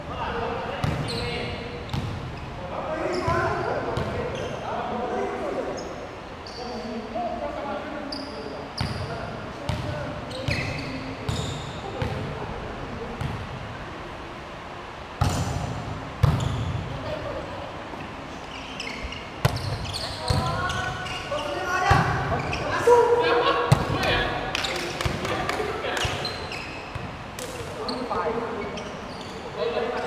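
A volleyball being struck by hands and hitting the hard court floor, sharp slaps scattered through the rally play, with players calling out and talking between hits.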